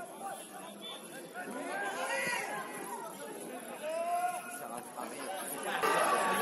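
Indistinct shouts and chatter of players and spectators at a football match, with a few louder calls in the middle. Crowd noise swells just before the end.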